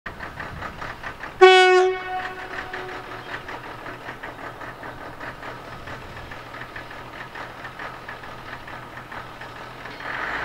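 Leyland experimental railbus RB004 sounding one short, single-tone horn blast about one and a half seconds in, which echoes away over the next second, while its engine runs steadily.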